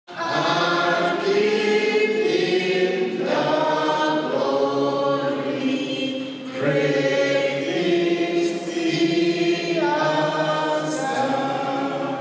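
A group of voices singing a slow hymn together, long held notes in phrases that change about every three seconds.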